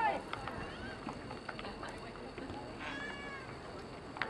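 Players calling and shouting across an open soccer field, one call near the start and another about three seconds in, over steady outdoor background noise with a few faint knocks.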